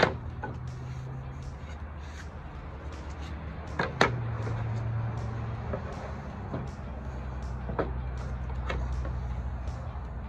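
Wooden strips being handled and laid out on a workbench: scattered knocks, the two sharpest at the very start and about four seconds in, over a low steady hum.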